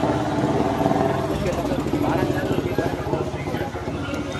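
A motor vehicle engine running close by on the street, its low rumble growing stronger about a second in, with people's voices around it.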